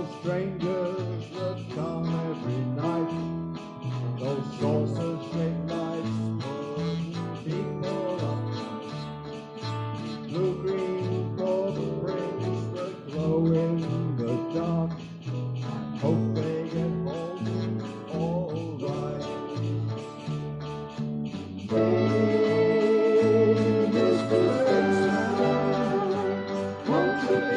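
A small live band playing a song in a hall, with guitars over a steady bass line. About 22 seconds in, the playing gets louder and fuller.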